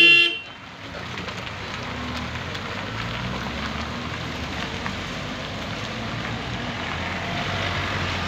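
Car driving slowly in traffic, its engine and road noise heard from inside the car as a steady rumble that grows a little louder toward the end. A brief horn toot sounds right at the start.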